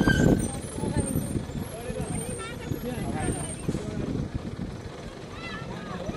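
Engine and road noise of a vehicle driving, heard from inside, with people's voices talking over it; loudest in the first moment, then a steadier, quieter rumble.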